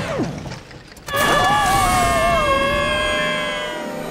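Sound effects of a malfunctioning homemade rocket ship: a short falling whistle, a brief lull, then, about a second in, a loud sustained whine made of several steady tones and one wavering one.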